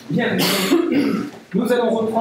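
A man's voice at a lectern microphone, clearing his throat and saying a few words in two short stretches.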